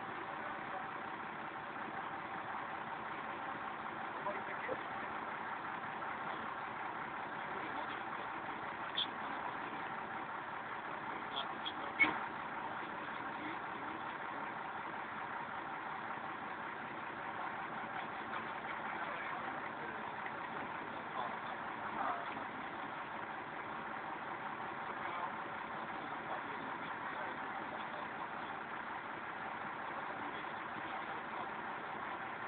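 A vehicle engine idling steadily, with a few brief clicks about nine and twelve seconds in.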